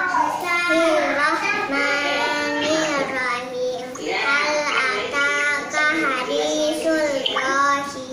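A young girl reciting the Qur'an from memory in a melodic chant, phrase after phrase with short pauses for breath.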